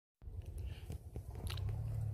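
Low rumble with scattered faint crackles and clicks, typical of wind and handling noise on a hand-held phone microphone.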